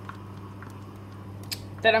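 Steady low hum and faint hiss, with a few light clicks of a plastic measuring spoon and spatula against a frying pan, the clearest about one and a half seconds in.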